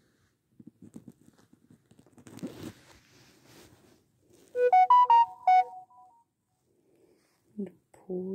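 A short electronic jingle of about six quick pitched notes, lasting a second and a half about halfway through. Before it come faint soft rustles of fingers moving over the kits and the fluffy blanket.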